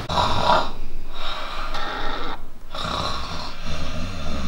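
A man snoring, several long snoring breaths one after another.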